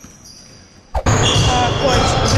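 Basketballs bouncing on a gym's wooden floor during team practice, echoing in the large hall, starting suddenly about a second in, with voices in the background. Before that, the fading end of a short intro chime.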